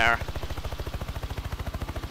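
Helicopter main rotor heard from inside the cabin: a steady, rapid low thudding of many even beats a second.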